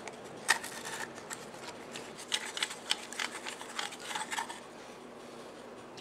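Faint metallic clicks and light scraping as a wrench loosens and unscrews the forend tube nut of a Remington 870 pump shotgun. The clicks are scattered and irregular and stop about four and a half seconds in.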